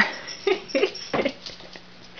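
Yellow Labrador puppy sniffing close to the microphone: a run of short, irregular sniffs.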